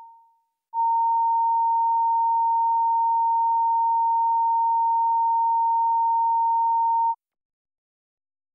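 Broadcast line-up test tone: one steady electronic pitch. The end of the previous tone fades out in the first half second; the tone comes back just under a second in, holds for about six seconds and then cuts off.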